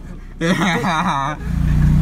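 A man laughs. About halfway through, a motor vehicle engine's low steady hum comes up and carries on.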